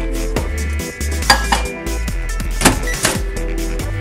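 Electronic background music with a steady beat and deep bass, with sharp accents about a second and a half apart.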